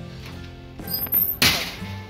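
Background music, with a brief high squeak and then one sharp bang about one and a half seconds in, as the mesh security screen door is passed through.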